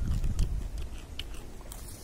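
A person chewing a small dried jujube (Chinese date) with the mouth closed: a few faint clicks over a low rumble.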